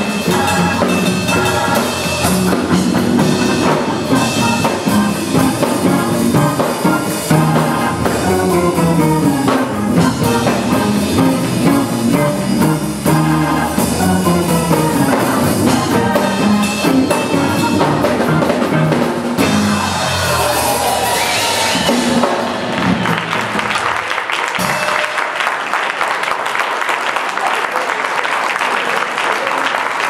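Live gospel trio of keyboards, hollow-body electric guitar and drum kit playing the closing passage of the tune; the music winds down about twenty seconds in, and audience applause follows.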